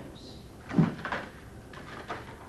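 Photograph cards knocking and clattering on a tray as a bonobo handles them: one sharp knock a little under a second in, then a few lighter clicks.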